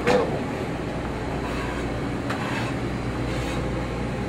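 Steady fan hum with a low drone, the running ventilation noise of a commercial kitchen, with a faint click a little after two seconds in.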